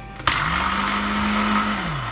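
SilverCrest SSDMD 600 blender's 600 W motor starting abruptly with a click as the jug locks onto the base, spinning up, running steadily and loudly for about a second and a half, then winding down near the end. It starts straight away because the speed dial was left on second or third speed.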